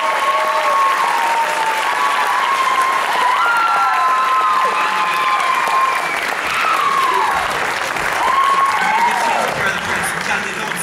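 Theatre audience applauding, with shouted whoops and cheers swooping up and down over the clapping.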